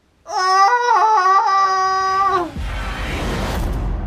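A man's long, high-pitched drawn-out groan of dismay, held for about two seconds with small steps in pitch. It gives way to a rumbling whoosh sound effect with a deep low end.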